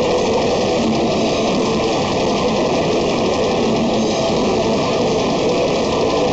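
Metal band playing live: distorted electric guitars and bass over fast drumming, a loud, dense, unbroken wall of sound.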